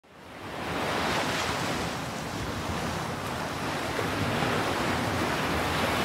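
Ocean surf washing steadily on the shore, fading in over the first second.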